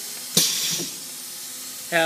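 A sudden burst of compressed-air hiss from the Seal Image 6000 Ultra laminator's pneumatic roller system about a third of a second in, fading over about half a second into a steady hiss.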